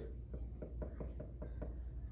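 Dry-erase marker writing letters on a whiteboard: a run of short strokes and taps of the felt tip on the board.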